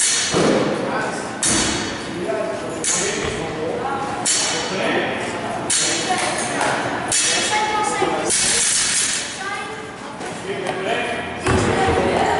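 Loaded barbell with rubber bumper plates touching down on a rubber gym floor at each deadlift rep, a thud with a short rattle about every one and a half seconds. Near the end the bar is set down with a heavier, deeper thud.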